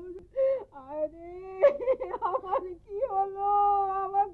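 An elderly woman wailing and sobbing in grief. She gives broken, wavering crying cries, then one long drawn-out wail near the end.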